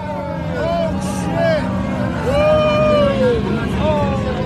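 Several people shouting and calling out, with the steady drone of quad bike engines underneath.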